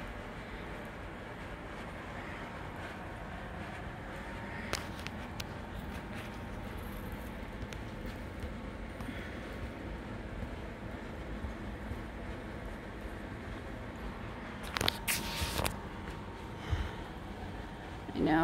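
Handling noise over a steady background hiss: faint clicks about five seconds in, then a short run of knocks and rustling near the end, the loudest moment.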